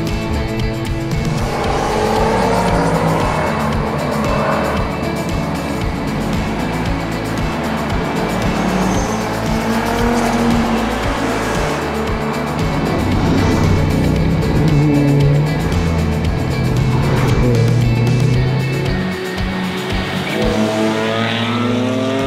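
Sports cars driven hard on a closed tarmac road, their engines revving up in rising sweeps about a second in and again near the end. Background music with a stepped bass line plays underneath.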